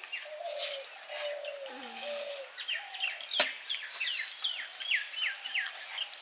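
Birds calling: a quick run of short, falling chirps, about three a second, through the middle, with lower drawn-out notes in the first two seconds.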